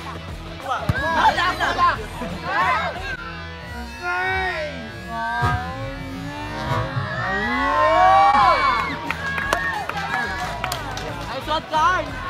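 Voices of players and onlookers calling out over music, with a few short knocks.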